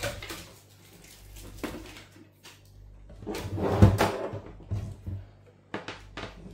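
Handling noise on a wooden tabletop: scattered clicks and knocks as a charger's mains cable and plug are picked up and moved, with a louder rustling thump about four seconds in.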